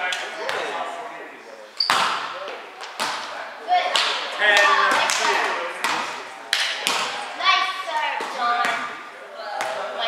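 A volleyball being played in an echoing gym: several sharp slaps of hands and arms striking the ball during a rally, each with a reverberant tail, while players call out between the hits.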